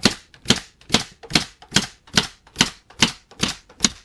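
Pneumatic nail gun firing nails into the wood of a drawer box: ten sharp shots in a steady run, about two and a half a second.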